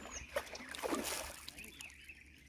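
Water sloshing and lapping around a person wading chest-deep, with several short light splashes as he swings a fishing rod up to lift a hooked fish clear of the water. The splashes come mostly in the first second and fade toward the end.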